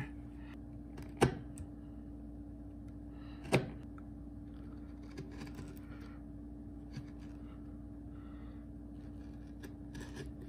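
Hand chisel paring end grain at the end of a truss-rod slot in a maple guitar neck blank: faint scraping cuts, with two sharp clicks, about a second in and two seconds later, over a steady low hum.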